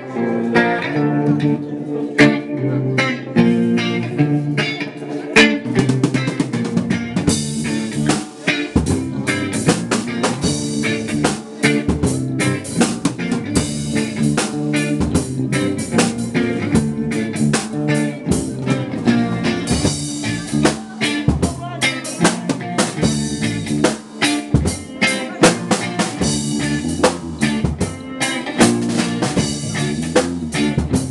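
Live band playing a reggae-flavoured instrumental passage on electric guitar, bass guitar and drum kit. The drums and cymbals come in fuller about seven seconds in.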